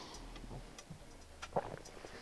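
Quiet room with a few faint, soft clicks, the clearest about one and a half seconds in.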